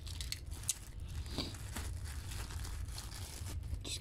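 Faint crinkling of a plastic thrift-store bag, with a few small clicks, as die-cast toy cars are taken out of it. A low steady hum runs underneath.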